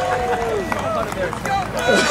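Men laughing and talking.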